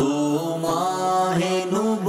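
A vocal nasheed: voices chanting a slow melody of held notes that glide from one pitch to the next, over a steady low drone.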